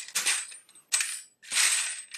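Empty brass pistol cases clattering against each other in a hard plastic shell-sorter tray as it is shaken, in three short bursts; the shaking is meant to knock loose cases nested inside one another.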